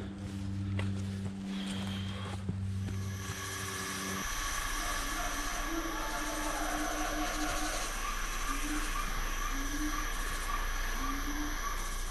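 Eerie, unchanging drone: a steady low hum, then from about three seconds in a hissing, rushing layer with high fixed tones and faint short wavering notes. It cuts off just before the end.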